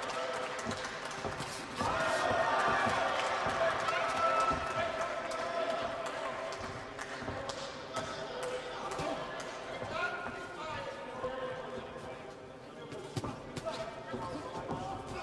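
Boxing-hall crowd shouting, swelling about two seconds in and again near ten seconds, over repeated short thuds of gloved punches and footwork on the ring canvas.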